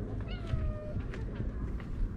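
A cat meowing once: a single meow about half a second long that falls a little in pitch.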